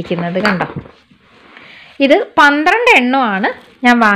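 Mostly a woman talking, with light knocks of glass jars being handled in a cardboard box under her voice.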